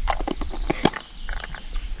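A few sharp clicks and taps of boilies and a hard plastic PVA stick loading tube being handled, mostly in the first second.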